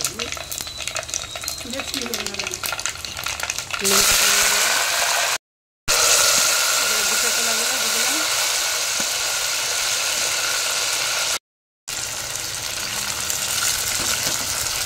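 Hot oil in a clay pot crackling and spitting as black mustard seeds, dry red chillies and a bay leaf fry in it. About four seconds in, the sizzling turns much louder and hissing as diced potato and raw banana are spooned into the oil. The sound cuts out twice for about half a second.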